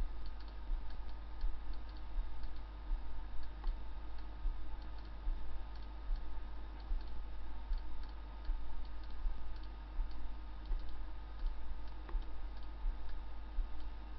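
Quiet ticking clicks at an uneven pace over a steady low hum.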